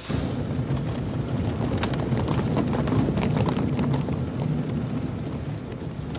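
Car driving, heard from inside the cabin: a steady low rumble of engine and road noise, with a few faint clicks.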